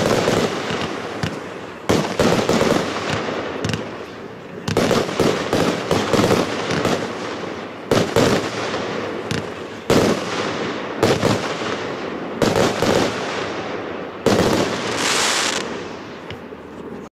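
Consumer firework cake (multi-shot battery) firing, with a loud report roughly every two seconds. Each report is followed by a spray of crackling from the bursting stars.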